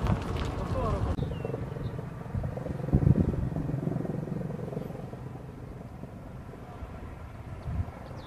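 Wind rumbling on the microphone, with one dull low thump about three seconds in.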